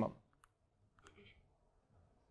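The tail of a spoken word, then a couple of faint clicks about half a second apart, from the button of a handheld presentation remote as the slide advances.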